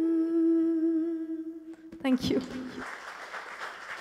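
A woman singing into a microphone holds one long, steady final note that fades and ends about two seconds in, followed by applause from the audience.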